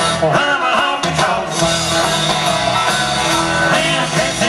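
Live country band playing loudly through a PA, with electric guitars, bass and drums; pitched lines bend and glide about half a second in.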